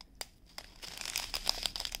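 Small clear plastic bags of diamond painting drills crinkling as they are handled, with a sharp click just after the start.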